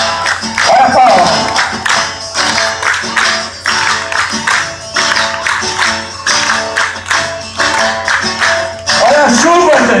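Live música sertaneja played by a band with acoustic guitar, with a crowd clapping along in a steady beat.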